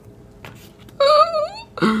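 A woman's brief high-pitched, wavering vocal whine, a playful moan, about halfway through, followed by the start of speech.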